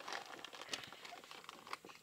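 Faint rustling of paper and dryer lint, with a few light clicks, as a metal fire-starting striker is set and pressed into the lint before striking sparks.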